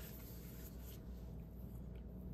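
Quiet room tone with a steady low hum and faint soft rustling, like light handling of paper or cloth.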